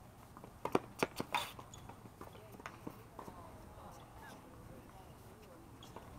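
Tennis balls knocking in a quick cluster of five or so sharp hits about a second in, then a low steady background.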